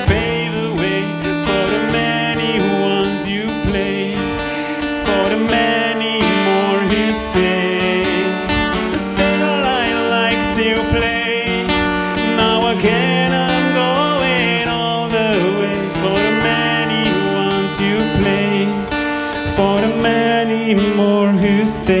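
Acoustic guitar strummed in a live solo performance, with a voice singing a melody over parts of it.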